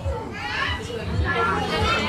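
Crowd of young children talking and calling out at once, a busy overlapping chatter of high voices.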